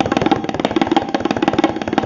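Tabla solo: a fast, dense run of right- and left-hand strokes, without the deep bass resonance of the bayan, over a steady lehra melody loop.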